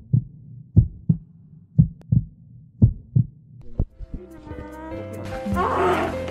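Heartbeat sound effect, a double thump about once a second. About four seconds in, music swells under it, and near the end a newborn baby starts crying.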